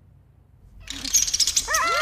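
A moment of quiet, then about a second in a sudden noisy rustle, followed near the end by a quick run of short, high animal yelps that each rise and then fall in pitch.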